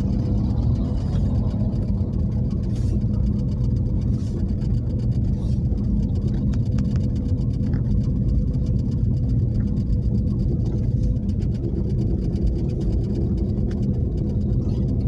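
Steady, low engine and road noise of a car driving, heard from inside its cabin.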